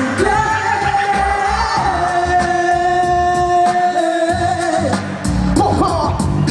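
A woman singing long held notes that step down in pitch, over a hip hop beat with a pulsing bass, live through a microphone.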